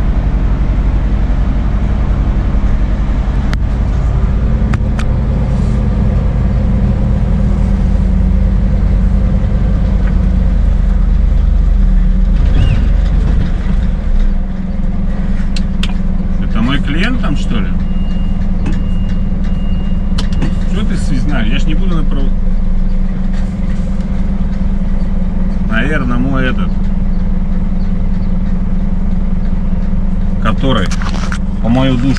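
Scania S500 truck's diesel engine running steadily at low revs, heard from inside the cab, its hum changing in pitch about halfway through.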